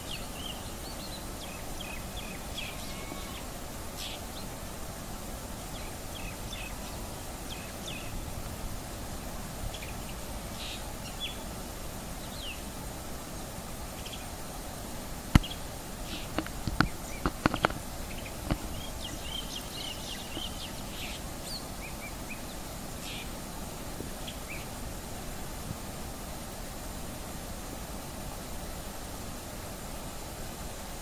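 Short, high bird chirps come singly and in little clusters through the whole stretch, over a steady background hiss. About fifteen seconds in there is one sharp click, followed by a quick run of several more clicks over the next few seconds. These clicks are the loudest sounds.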